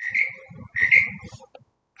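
A bird calling at night: two short calls about three-quarters of a second apart, part of a varied run of night-time calls.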